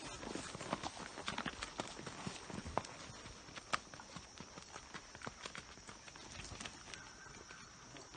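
Hoofbeats of a ridden Tennessee Walking Horse on a dirt trail, an uneven clip-clop that fades as the horse moves away.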